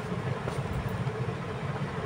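Steady low rumble of background noise, with no distinct events.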